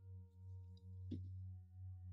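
Faint, steady ringing drone of sustained tones in the manner of a singing bowl: a low hum with several higher held notes. A soft click comes about a second in, and a new higher note enters just after it.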